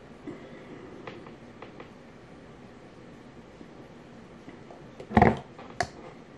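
A person drinking a thick green smoothie: mostly quiet, with a few faint small clicks. About five seconds in comes one loud short burst of breath or voice, then a sharp click just before the end.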